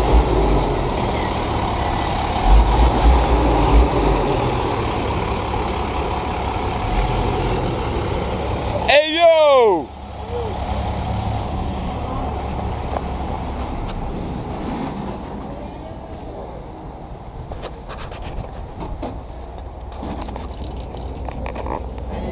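Flatbed truck's engine running as the truck backs up, a steady low rumble, loudest in the first few seconds. About nine seconds in, a short squeal bends in pitch, then the sound drops suddenly and the engine runs on more quietly.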